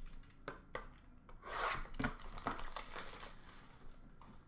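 Cardboard trading-card boxes and packs handled in a plastic bin: rubbing and scraping, loudest about a second and a half in, with a few light knocks.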